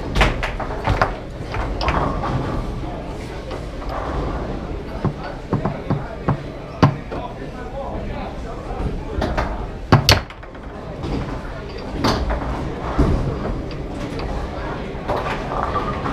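Foosball in play: irregular sharp clacks and knocks of the ball striking the plastic men and table walls and of rods banging, with a few louder slams about 7, 10, 12 and 13 seconds in.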